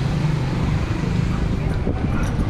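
Steady street noise, with motor vehicle engines running close by.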